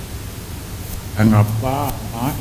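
A man speaking into a handheld microphone, starting about a second in after a short pause that holds only a steady background hiss.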